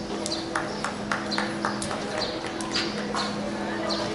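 Irregular sharp claps or clicks, several a second, over a steady low hum, with faint voices.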